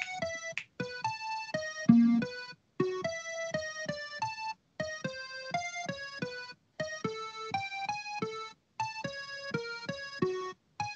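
Sonified X-ray data from the X Hydra binary star system, made with NASA's xSonify software, playing as a run of short electronic keyboard notes of changing pitch. The notes come in groups broken by brief silences about every two seconds, in what is heard as a very common clave rhythm.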